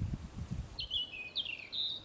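A small songbird sings a short phrase of high, sliding notes starting a little under a second in. Under it, in the first part, there are low, irregular rumbling bumps.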